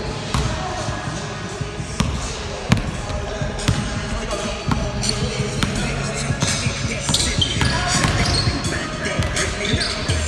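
Basketball bouncing on a hardwood gym floor during play, with irregular sharp bounces echoing in the hall, over indistinct background voices.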